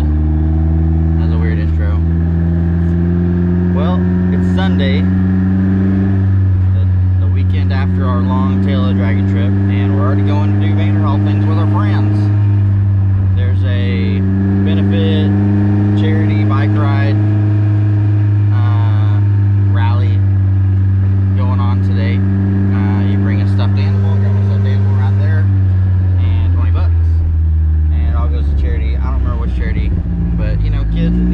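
A car's engine running on the road in an open cockpit. Its note holds steady for long stretches, dropping about six seconds in, climbing again at about fourteen, dropping at about twenty-six and rising near the end as the speed changes.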